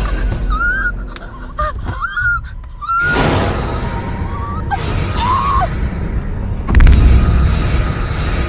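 Horror-film soundtrack: a woman's short, strangled gasps and cries over tense music, with a loud sudden hit near the end.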